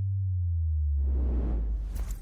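Channel-logo intro sound effect: a deep bass tone that starts suddenly and holds steady, joined about a second in by a swelling whoosh that rises into a bright hiss near the end.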